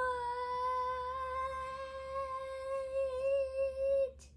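A young boy's voice holding one long, steady "whoa" on a single note, drawn out for several seconds before it stops.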